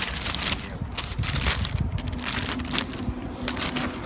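Sandwich wrapping paper crinkling and rustling as it is unfolded by hand, in a run of quick crackles. A steady low hum comes in about halfway.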